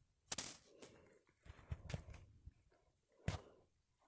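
A series of sharp knocks and scuffs right on a phone's microphone as a puppy mouths and paws at the phone. The loudest knocks come about a third of a second in and just past three seconds in, with softer ones and rubbing in between.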